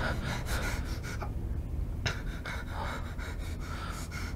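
A person breathing in short, irregular gasps, several breaths a second or so apart, over a low steady drone.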